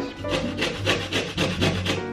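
A lime being grated on a metal grater to take off its zest: rapid, evenly repeated rasping strokes, about five or six a second.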